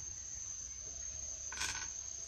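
Insects giving a steady high-pitched trill, with a brief noise near the end.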